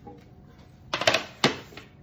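Light clatter of handling at a kitchen worktop: a quick run of clicks and knocks about a second in, then one sharper knock.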